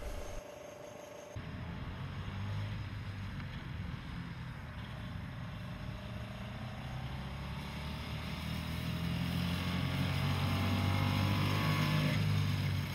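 The Maikäfer's small 200 cc single-cylinder two-stroke engine running as the car drives by, a steady low hum that starts about a second in and grows louder in the second half.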